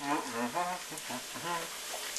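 A person's voice murmuring quietly in a few short sounds, over a faint steady hiss.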